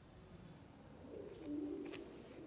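A pigeon cooing, a low wavering call that starts about a second in.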